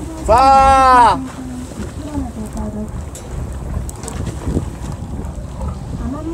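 A man's long, loud shout that rises and falls in pitch near the start, then quieter talk, over a steady low rumble of wind on the microphone and the boat.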